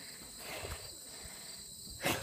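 Faint, steady chorus of insects, crickets, holding a high continuous trill, with light low bumps of handling underneath.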